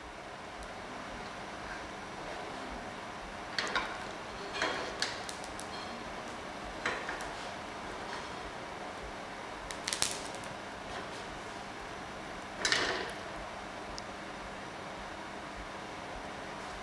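A utensil scraping and tapping against an empty non-stick pan being preheated dry on a gas burner: about six short clatters, the loudest about ten and thirteen seconds in, over a steady low hiss.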